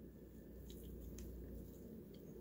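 Faint handling sounds, with a few small clicks, as gloved fingers pull open the slit, leathery shell of a ball python egg, over a steady low hum.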